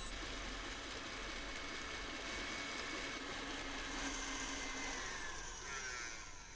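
KitchenAid tilt-head stand mixer running on high, its wire whip beating egg-yolk buttercream as pieces of butter go in: a steady motor whine over a whisking hiss. Near the end the whine drops in pitch as the mixer slows.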